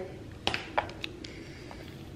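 A few soft, sharp clicks, about half a second to a second in, from a plastic seasoning shaker bottle being opened and handled over a bowl of raw oxtails; otherwise quiet.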